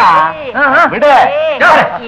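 A voice crying out in about four loud, high, rising-and-falling yelps in quick succession.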